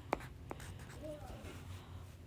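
Wax crayon writing letters on a paper card, with two sharp taps near the start.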